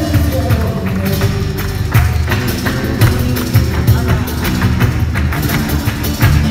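Live flamenco music: two Spanish guitars played under sharp, irregular handclaps (palmas) and the dancer's percussive footwork strikes.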